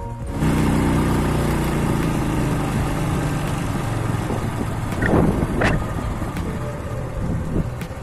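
Motorcycle engine running on the move, with wind rushing over the microphone. It starts suddenly about half a second in, the engine note sinks a little over the next few seconds, and there is a louder swell around five seconds in.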